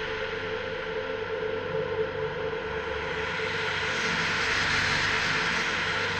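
Goa trance track intro without a beat: a steady, jet-like droning noise with a held low tone, and a hissing swell that builds about four seconds in.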